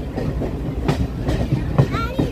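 Passenger train running, heard from inside the coach: a steady rumble with an irregular clatter of the wheels on the rails.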